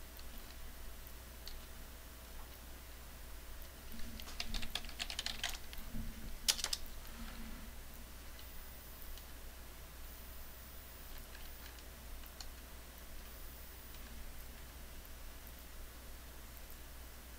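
Computer keyboard keys clicking: a quick run of presses about four seconds in, then one louder click, and a few faint clicks later on.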